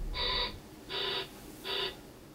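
Three short electronic beeps about 0.7 s apart: pulsed test tones from a clinical audiometer.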